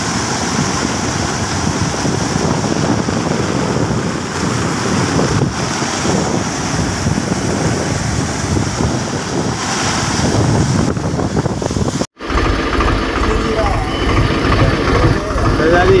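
Floodwater rushing and churning over a submerged road, a steady loud noise. About twelve seconds in it cuts off abruptly to a different recording with a low steady rumble and a voice exclaiming near the end.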